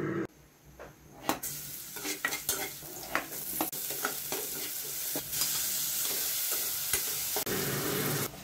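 Chopped garlic and onion sizzling in hot oil in a pan while a metal spatula stirs and scrapes them, with light clicks. The sizzle starts about a second in and becomes steady and louder in the second half.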